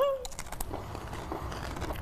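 Crunchy corn chips being chewed, muffled by a hand held over the microphone, with faint crackles.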